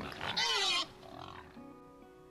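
A pig oinking: one loud call about half a second in, then a fainter sound, over faint background music.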